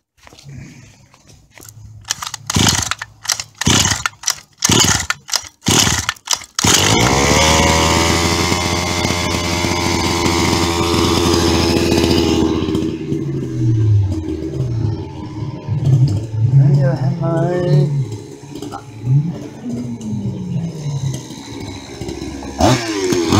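Custom 30.5cc two-stroke gasoline engine of an HPI Baja RC car, run with no tuned pipe, being cranked over in a string of short bursts for about six seconds until it catches. It then runs loud and steady at high speed for about six seconds, and drops to a lower, wavering rev with rises and falls as the car moves off.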